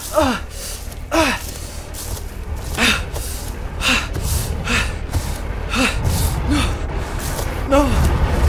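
A person panting and gasping for breath: short voiced gasps, each falling in pitch, about once a second, over a steady low rumble.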